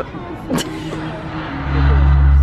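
Fireworks show: a single sharp firework bang about half a second in. From about a second and a half comes a loud, deep, steady rumble from the show's amplified soundtrack.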